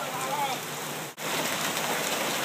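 Steady hiss of rain, dropping out for an instant just after a second in, with a faint voice early on.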